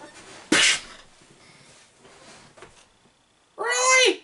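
A man making a breathy mouth-noise burst in imitation of a punch about half a second in, then a short high-pitched vocal sound that rises and falls near the end.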